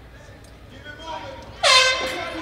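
Spectators' voices, then about one and a half seconds in a sudden, loud air horn blast that carries on to the end: the horn that ends the round in a caged MMA bout.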